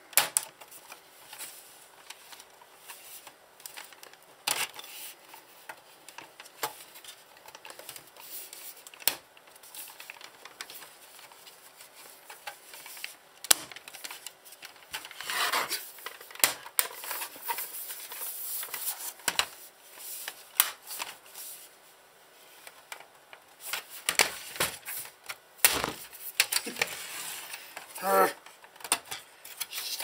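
Plastic and metal parts of a Sky+ HD receiver's hard-drive bracket being handled and fitted. Scattered clicks, taps and scrapes come at irregular moments.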